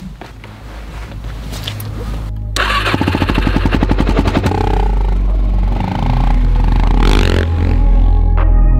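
Suzuki DR-Z400SM supermoto's single-cylinder four-stroke engine, exhausting through a Honda CRF250X silencer, running with a quick even pulse and then being revved, growing louder toward the end.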